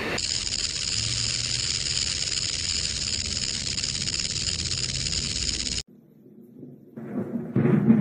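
Rattlesnake rattling: a steady high buzz that cuts off abruptly about six seconds in. Near the end, dramatic music with a drum hit begins.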